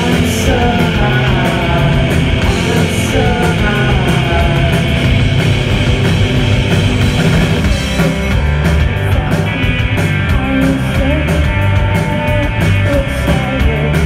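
Live shoegaze-style rock band playing loud from the audience floor: distorted electric guitar, bass guitar and drum kit, with a sung vocal line through the first half. In the second half the vocal drops out and the band carries on with steady cymbal strokes and held guitar notes.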